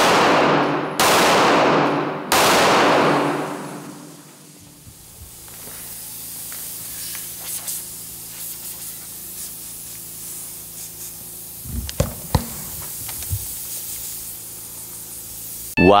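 Three pistol shots of Sellier & Bellot 124-grain full metal jacket ammunition fired into a car tyre, about a second apart, each ringing out and dying away. Then a steady hiss of air leaking from the punctured tyre, with a few short knocks about twelve seconds in.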